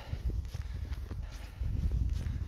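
Footsteps walking through snow, with a low steady rumble underneath.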